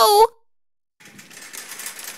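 The tail of a woman's cry, then after a short pause a rapid, buzzy rattling clatter starts about a second in and grows louder.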